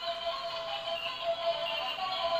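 Two light-up toy spinning tops playing a simple electronic tune as they spin, fairly quiet.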